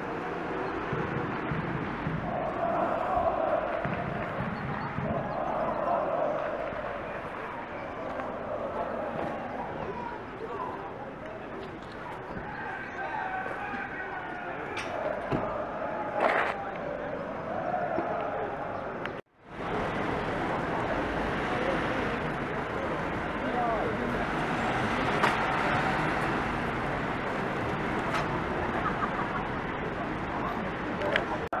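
Outdoor street ambience with indistinct voices of people talking, and a couple of sharp knocks just past the middle. The sound drops out for an instant about two-thirds of the way through, then carries on noisier.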